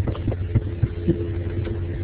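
Steady low hum with scattered short clicks.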